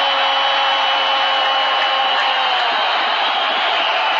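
A football commentator's long held goal shout on one steady pitch, lasting about two and a half seconds, over a steady roar of stadium crowd noise, celebrating a hat-trick goal.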